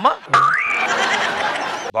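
A comedy sound effect: a whistle-like tone that slides up and then holds, over a loud noisy burst, cutting off suddenly near the end.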